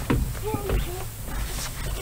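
A long cardboard box being dragged across wooden deck boards by its strap, scraping and bumping, with a brief murmur of voice.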